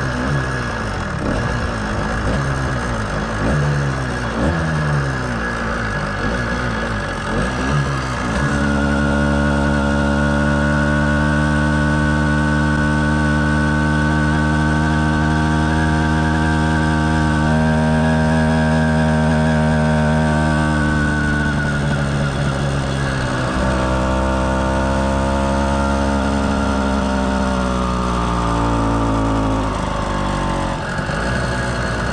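Two-stroke motorized-bicycle engine, an 85cc kit sold as 110cc, under way on the road. For the first eight seconds or so the pitch surges up and down over and over. It then holds a steady pitch at cruising speed, and in the last several seconds falls slowly as the throttle eases off.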